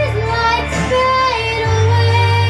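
A young boy singing a slow ballad into a microphone, holding long notes and gliding between pitches, over a recorded backing track with sustained bass notes.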